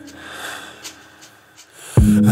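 A pause in a slowed pop song: the music's last notes die away into a quiet, breathy hiss with a few faint mouth and breath noises, and the singer's breath swells just before the music comes back in.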